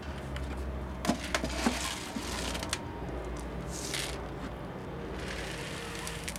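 Akadama, a granular clay bonsai substrate, being scooped and poured into a plastic pot. A few sharp clicks come about a second in, then several short hissing rushes of grains pouring, near the middle and again near the end.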